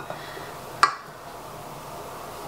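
A single sharp click of kitchen equipment being handled, a little under a second in, over quiet room tone.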